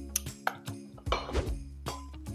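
Background music, with a few light clinks of a steel bar jigger and a short pour of simple syrup into a glass mug of coffee.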